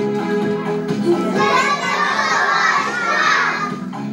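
Music with sustained notes, joined from about one and a half seconds in by a burst of many young children's voices together, high-pitched, lasting about two seconds before falling away near the end.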